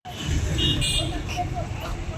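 Indistinct voices over a steady outdoor background rumble, with two short high-pitched tones a little over half a second in.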